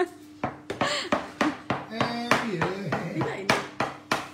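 Metal bench scraper chopping a rope of castagnole dough into small pieces. The blade strikes the floured worktop in sharp knocks, about two to three a second.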